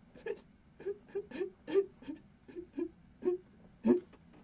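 A man sobbing in short, broken whimpering cries with catching breaths, about ten in a few seconds.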